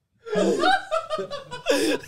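Men laughing together in repeated bursts, starting about a quarter second in after a brief hush.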